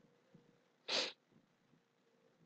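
A single short, sharp breath noise from a man at the microphone, a quick nasal exhale or stifled sneeze, about a second in; otherwise near silence with a faint hum.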